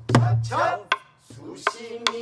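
Buk, the Korean barrel drum that accompanies pansori, struck with a wooden stick: four sharp strokes about three-quarters of a second apart, the first with a deep boom from the drumhead.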